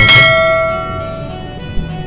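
A single bell-like chime struck once, ringing out and fading over about a second and a half, as part of background music.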